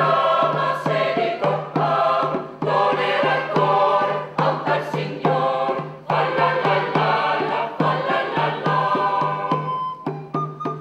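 Background music: a choir singing, with a steady low note held underneath.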